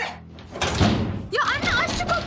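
A front door with a frosted-glass panel and wrought-iron grille slammed shut about half a second in, followed by a girl shouting.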